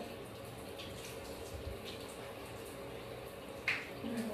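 Faint water sounds in a bathtub as a child's hair is washed and rinsed, steady and low, with one short louder sound near the end.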